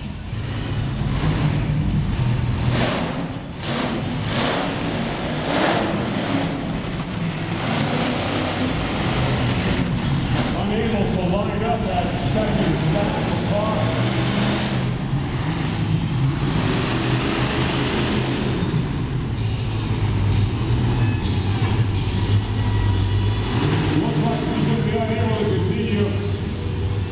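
A monster truck's engine running loud and revving as the truck drives around a dirt arena floor.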